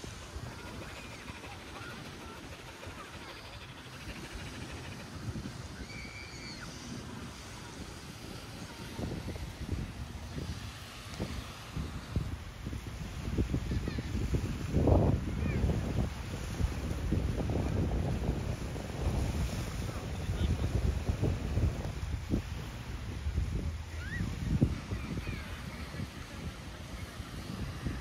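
Small waves washing onto a beach, with wind buffeting the microphone in gusts that grow stronger in the second half.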